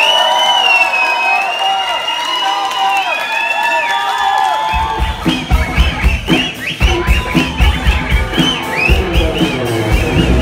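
A live crowd cheering and whistling, then about five seconds in a rock band kicks in with drums and bass under the noise of the crowd.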